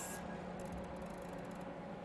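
Haas TM-1p mill's table being hand-jogged: a faint steady machine hum, with a high thin whine that cuts off just after the start.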